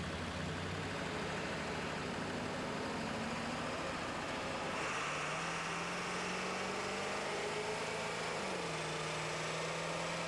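1999 Ford F-350's 7.3-litre Power Stroke V8 turbo-diesel running steadily with the truck on a chassis dynamometer for a power run. Its pitch climbs slowly from about halfway through, then drops about eight and a half seconds in.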